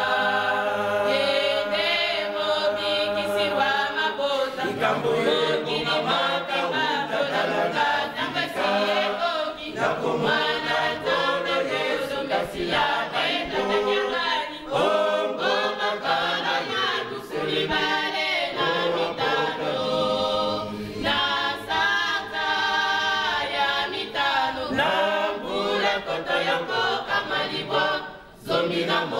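A church choir of mostly women's voices singing together a cappella, a continuous hymn with no instruments.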